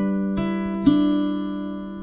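Background music: plucked guitar notes, three struck in the first second, left ringing and slowly fading.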